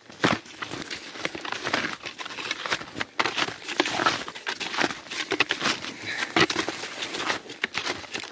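Snowshoe footsteps crunching through fresh snow, an irregular run of crackly steps.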